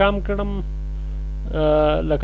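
Steady electrical mains hum on the recording. A man's voice comes in briefly at the start, and a drawn-out hesitation vowel near the end.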